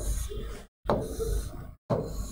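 Pen tapping and scraping on an interactive display board while drawing lines, with a soft knock about every second. The sound cuts out completely twice.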